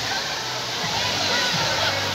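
Water dumped from a giant tipping bucket crashing down onto a splash pad and the people under it, a steady rushing splash.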